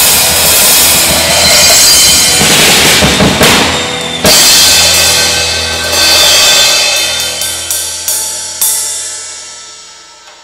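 Acoustic drum kit played along with the recorded song it covers, busy with cymbals and bass drum. A big crash hit about four seconds in ends the song. The cymbals and the song's held final chord then ring out and fade, with a few lighter hits under them.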